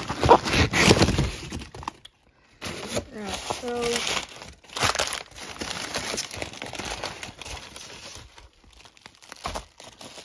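Crumpled kraft packing paper rustling and crinkling as handfuls are pulled out of a cardboard box, loudest in the first second and a half, then coming in shorter bursts.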